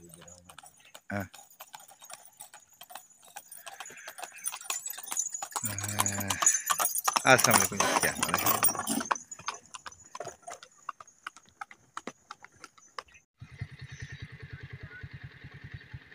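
Horse's hooves clip-clopping on a dirt road as a cart loaded with green fodder passes close by, the fodder rustling loudly as it brushes past about seven to nine seconds in. Near the end the sound cuts abruptly to a steady low buzzing hum.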